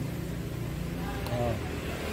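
Steady low hum of a desktop PC running on an open test bench: its cooling fans and a 3.5-inch hard drive spinning while the drive is being surface-scanned.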